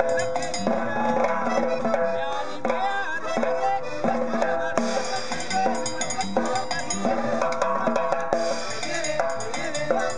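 A small norteño band playing in a steady rhythm: button accordion, acoustic guitar, upright bass, and a snare drum with cymbal.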